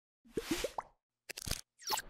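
Animated logo sound effects: four quick rising bloops within the first second, then a short patter of clicks and a rising swish.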